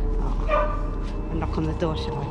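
A small dog yipping: one high cry about half a second in, then a few shorter falling cries near the end.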